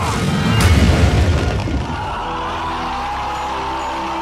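Film soundtrack: music with deep booming thunder-and-lightning impacts over the first two seconds, then the music settles into steady held notes.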